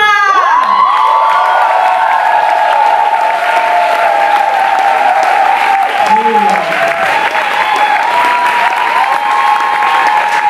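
Audience applauding and cheering a comedian onto the stage, with long, high, held cheers rising and falling over the clapping.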